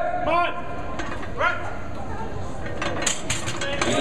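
Voices yelling as a loaded barbell squat is driven up, with a second shout about a second and a half in. Near the end come sharp metallic clanks of the barbell and iron plates as the bar is set back in the squat rack after a completed squat.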